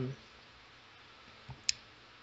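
A single short, sharp click during a pause in speech, over quiet room tone, with a fainter thump just before it.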